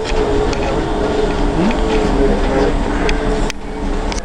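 Cabin noise inside a moving Flyer electric trolleybus: a steady low rumble with passengers' voices over it.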